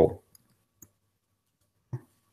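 A few faint computer-keyboard keystrokes, about three short clicks spread out over near silence.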